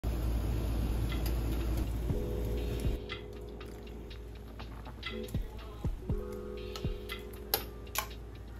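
Soup bubbling at a hard boil in a stainless-steel pot for the first few seconds, then a metal utensil clinking sharply against the pot as the broth is stirred, over soft background music.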